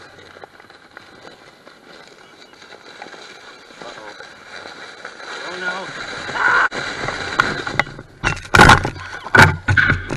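Foam sled sliding down a snowy slope, the scraping hiss of snow growing steadily louder as it picks up speed. Near the end come several loud thuds and crunches as the sled flips and the rider tumbles into the snow.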